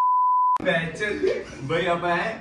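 A steady 1 kHz test-tone beep of the kind that goes with TV colour bars, held for about half a second and cut off suddenly. Men's voices and laughter follow at once.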